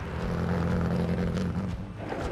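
A car engine running steadily with a low, even hum that eases off near the end.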